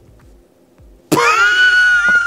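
A person's high-pitched squeal, starting suddenly about a second in and held on one steady pitch, mimicking an excited, starstruck reaction.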